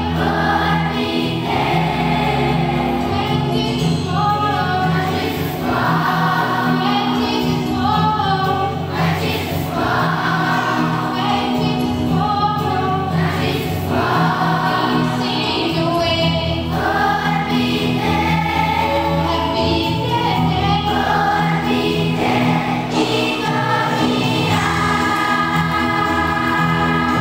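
A large children's choir singing in unison over an instrumental accompaniment with sustained low notes.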